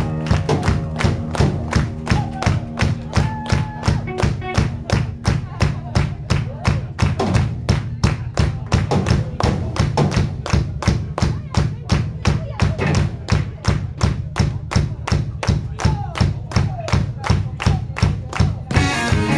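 Live rock band's instrumental break: drums keeping a steady beat of about three hits a second over a held low bass note, with no singing.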